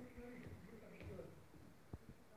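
Faint, indistinct voices in the room over near silence, with a few light ticks of a jump rope striking the floor and one sharper click near the end.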